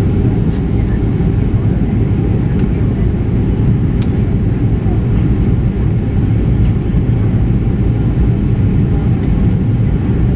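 Steady low roar of a Boeing 737's jet engines and rushing air, heard from inside the passenger cabin during descent, with a brief click about four seconds in.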